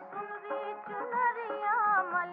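Music from a 1940s Hindi film song: a wavering, ornamented melody over accompaniment, in an old recording with no high treble.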